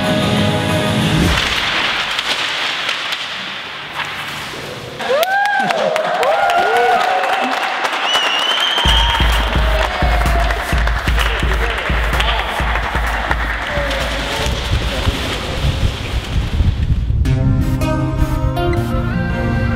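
A group clapping and shouting along to a dancer over a music track: the music thins out about a second in, leaving a haze of claps and voices with a few rising-and-falling shouts about five seconds in, then a heavy bass beat comes back near nine seconds with clapping over it.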